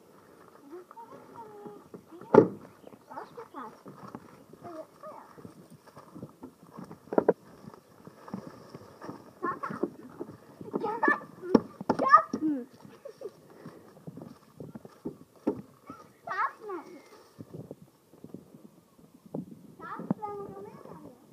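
Children's voices in short scattered bursts, with a few sharp knocks, the loudest about two seconds in and two more close together near the middle, and footsteps on gravel.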